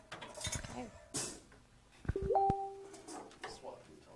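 Instruments being handled between songs: scattered knocks and clicks from the guitars. About two seconds in, a guitar string note slides up and rings for under a second.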